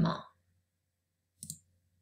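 A single short click from a computer mouse button, pressed to advance a presentation slide, about one and a half seconds in.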